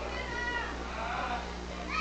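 Faint voices from the crowd, some high-pitched, over a steady low hum in a large hall.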